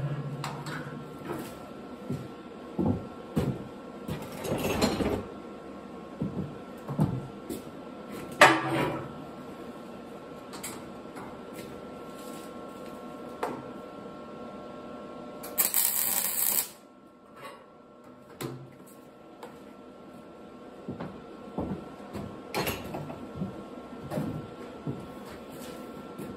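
Clanks and knocks of steel parts being handled on a welding frame, with one MIG welding arc crackling for about a second a little over halfway through, a short tack weld.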